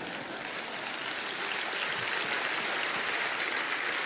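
Congregation applauding, a steady patter of many hands clapping in response to a line in a sermon.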